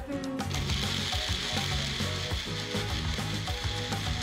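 A personal bullet-style blender runs steadily, blending a raw-mango and Tang drink in its cup.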